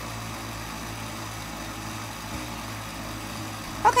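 Countertop blender motor running steadily, blending thick sweet-potato brownie batter, with a constant low hum.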